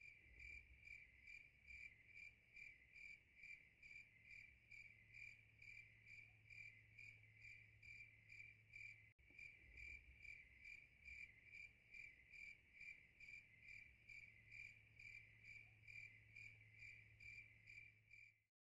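Faint cricket chirping, a regular pulse of about two chirps a second that keeps an even pace, over a faint low hum. It is the stock 'crickets' sound effect that marks an awkward silence after a question goes unanswered.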